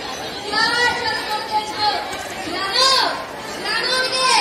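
Children's high-pitched voices speaking: stage dialogue in a hall, with some chatter.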